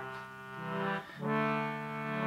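George Case baritone English concertina playing held chords on its own: one chord, a short break about a second in, then a second chord.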